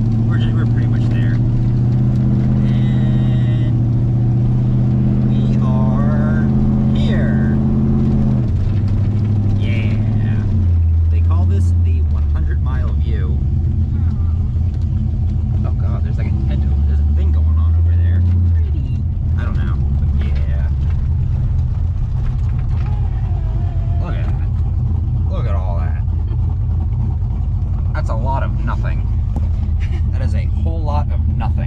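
Corvette V8 engine running at low speed, heard from inside the cabin, with a steady low note that drops in pitch about a third of the way in and shifts again a little past the middle. Faint voices come and go over it.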